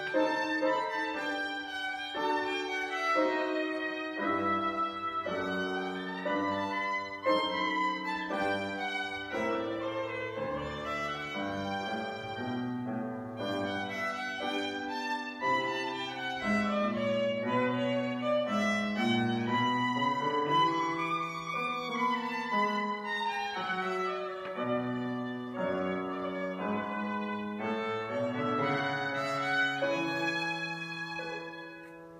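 Violin and grand piano playing a classical piece together, a continuous run of changing notes.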